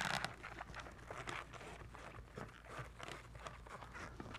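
Inflated latex 260 modelling balloon rubbing and creaking under the hands as a bubble is twisted off, a faint irregular crackle that is strongest at the very start.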